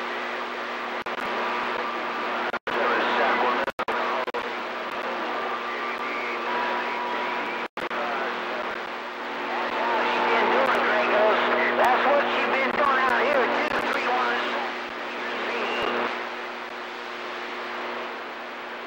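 CB radio receiver on channel 28 putting out garbled, unintelligible voices through static, with several steady whistling tones underneath. The voices are loudest and most wavering in the second half, and the audio drops out completely three times in the first half.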